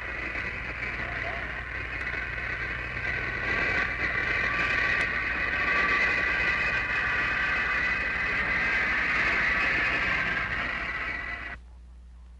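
A JR boat's engine running at 1,000 rpm, heard underwater through a hydrophone: a steady, rapidly pulsing hiss that swells over the first few seconds and cuts off suddenly near the end.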